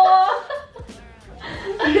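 Laughter in the first half second, then a short lull before speech starts again near the end.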